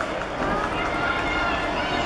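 Several people shouting and calling out at a football match, their voices wavering in pitch, over a steady background hiss of outdoor stadium noise.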